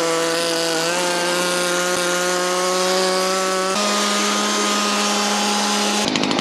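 Small handheld blower running steadily, blowing out an engine bay in place of compressed air. Its motor whine steps up slightly in pitch about a second in and again near four seconds.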